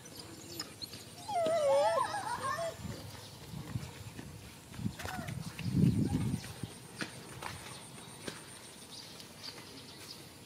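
A dog whines in a quavering, wavering pitch for about a second and a half near the start. About six seconds in comes a short low snuffling sound as the dog pushes its nose into the weeds along the fence.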